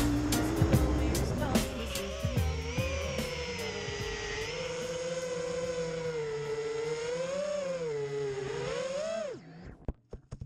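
Music fades out over the first two seconds, leaving the high whine of an FPV racing quadcopter's iFlight 2207 2650kv motors spinning Gemefan 5043 props, its pitch wavering up and down with the throttle. The whine cuts off suddenly near the end, followed by a sharp knock as the quad comes down in the grass.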